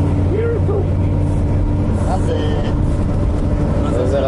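Steady low drone of a coach bus's engine and road noise, heard from inside the passenger cabin, with a constant hum in it. Short snatches of voices come in about half a second in and again around two seconds in.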